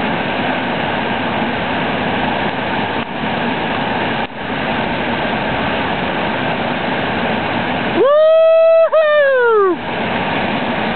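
Whitewater rapids of the Brule River rushing in a steady loud roar. Near the end, a person's long high-pitched yell of about two seconds rises, holds and falls away over the water noise.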